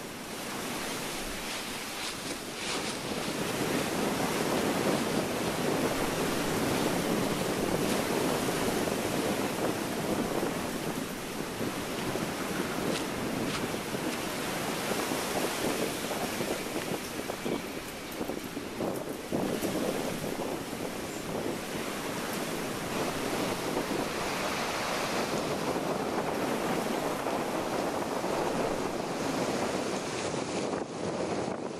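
A continuous rushing rustle of dry fallen leaves being walked through, mixed with wind noise on the microphone. It fades in over the first few seconds and then stays fairly even.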